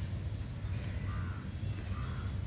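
A crow cawing faintly in the distance about a second in, over a steady low rumble.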